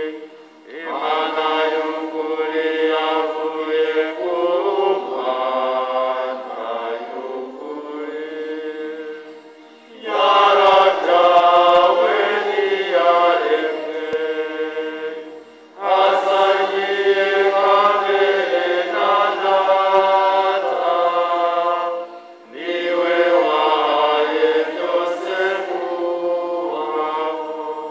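Church choir singing a hymn in several voice parts. The singing comes in phrases a few seconds long, with short breaks about 10, 16 and 22 seconds in.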